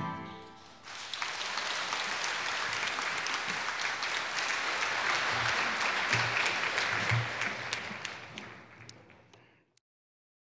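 The final chord of a handbell choir and its accompanying ensemble dies away in the first second. The audience then applauds, and the applause fades out near the end.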